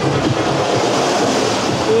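Roller coaster car rolling along its steel track in the station, a steady rumble and hiss of wheels on rail that fades near the end.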